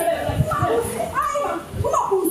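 Speech: people talking, with a couple of low thumps underneath.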